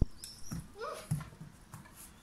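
German Shepherd dog nuzzling and licking at a person's face up close: a sharp click at the start, then short, irregular snuffling and licking noises with a few brief high squeaks.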